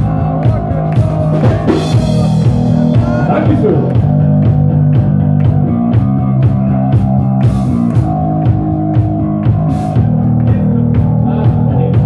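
Live rock band playing loud: electric guitar and bass guitar chords over a drum kit beat, with a crash of cymbals a few seconds in.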